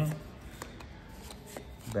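Yu-Gi-Oh trading cards being flipped through by hand, the cards sliding over one another with faint, irregular clicks.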